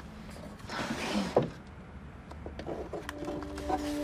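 A bedside-table drawer sliding open, ending in a sharp knock about a second and a half in, followed by a few light clicks of handling. Soft background music with sustained notes comes in near the end.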